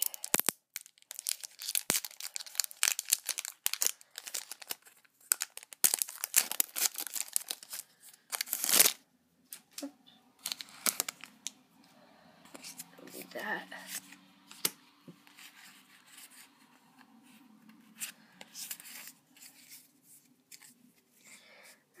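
Foil wrapper of a Pokémon trading card booster pack being torn open and crinkled by hand: a dense run of sharp tearing and crackling through the first nine seconds, loudest near nine seconds. After that come sparser, quieter rustles and clicks as the cards inside are handled.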